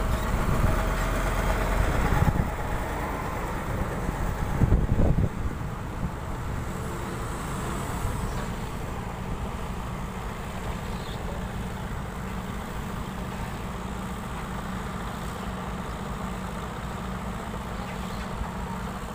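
Diesel engine of a concrete transit mixer truck running, louder for about the first five seconds with a brief surge, then settling to a steady, quieter hum.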